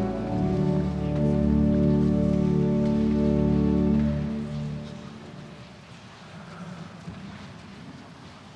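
Church organ holding sustained chords, which stop about four seconds in and die away into the church's reverberation, leaving a soft, noisy rustle of the room.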